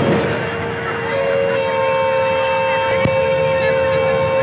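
A fairground ride's electronic horn sounding a sustained chord of several steady tones: one pitch at first, more joining in during the first second and a half, held throughout, over crowd babble. A single short click about three seconds in.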